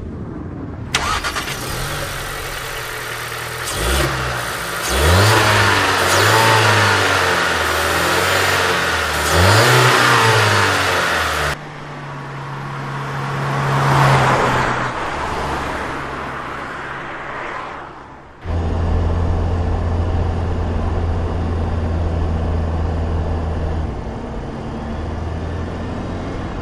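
Audi A1 Sportback's engine revving and driving past, its pitch rising and falling several times in the first half, then holding a steadier drone. The sound changes suddenly between edited takes.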